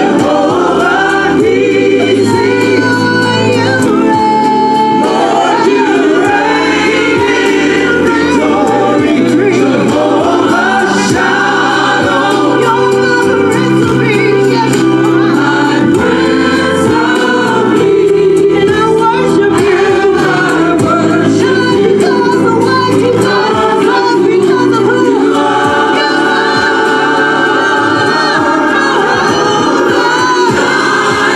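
Gospel praise team of several voices singing together into microphones over instrumental accompaniment, with low sustained chords changing every second or two under the voices.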